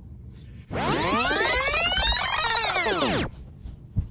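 Synthesized sweep sound effect, many layered tones gliding up and then back down in pitch, lasting about two and a half seconds from just under a second in.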